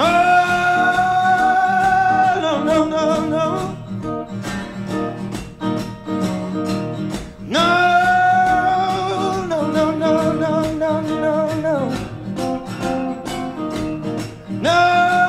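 A man singing long held notes with vibrato over guitar accompaniment in a live band performance. The vocal lines start at the beginning and again about halfway through.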